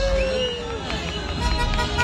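Street noise from a car-horn celebration: a voice calls out once in a long cry, then car horns honk in short blasts over the rumble of passing traffic.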